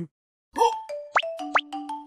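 Playful background music of short plucked notes, starting about half a second in, with two quick upward-sliding sound effects.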